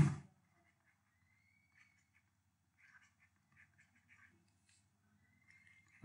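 Near silence, with only faint scattered ticks and scratches of a stylus writing on a tablet.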